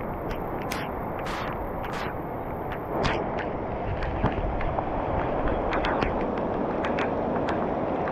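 Heavy tropical rain pouring steadily onto a concrete embankment, a dense hiss scattered with sharp ticks of single drops striking close by.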